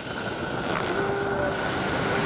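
Contemporary live music for flute, percussion and electronics: a dense, rumbling noise texture with a few held tones, swelling slightly louder near the start.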